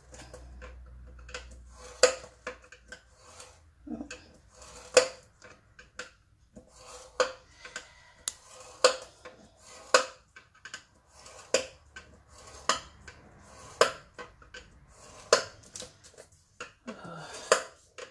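A scoring stylus pressed into the grooves of a plastic scoring board and drawn along them through thin patterned paper, one score line after another at half-inch steps. It gives sharp clicks and taps about once a second, some louder than others.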